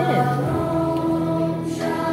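A children's choir singing along with a recorded accompaniment track, holding long steady notes.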